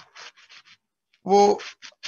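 A quick run of about five short, faint scratching sounds, then a man's voice says one word.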